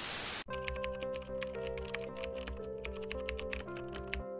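A short burst of static hiss, then rapid, irregular computer-keyboard typing clicks over background music with held notes. The typing stops near the end while the music carries on.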